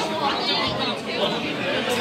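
Indistinct, overlapping chatter of several people's voices.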